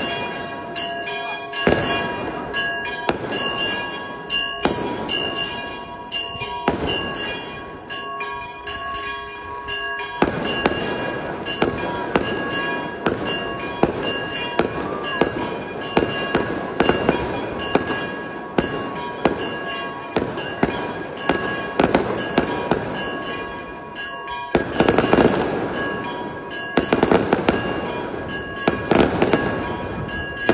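Fireworks going off in a steady run of sharp bangs and crackling, thickest in the last few seconds, with church bells ringing underneath.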